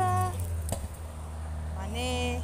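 A voice trailing off at the start and starting again near the end, over a steady low hum; one sharp click a little under a second in.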